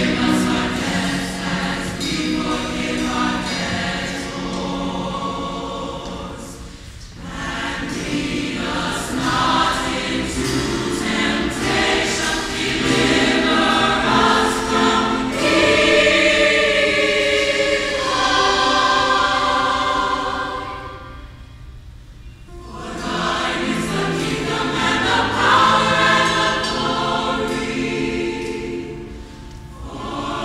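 A large choir singing held chords in harmony, with two short breaks between phrases.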